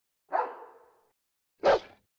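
Dog barking: two single barks about a second apart, the second, near the end, louder.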